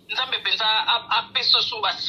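Speech only: a voice talking in quick syllables with brief breaks.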